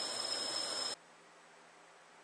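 A thin stream of water trickling from the cap of a homemade bottle filter into a sink, an even hiss that cuts off abruptly about a second in, leaving near silence.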